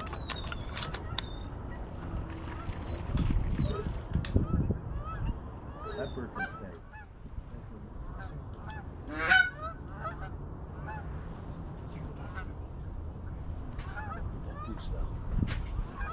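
Geese honking: many short calls repeat throughout, with one louder call about nine seconds in, over a low rumble of wind on the microphone.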